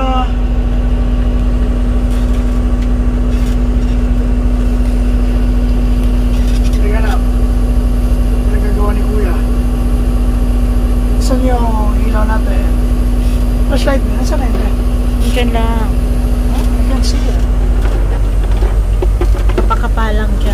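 Semi truck's diesel engine running with a steady low drone and hum, heard from inside the cab.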